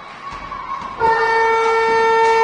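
Arena horn sounding one steady, loud tone that starts suddenly about a second in and holds.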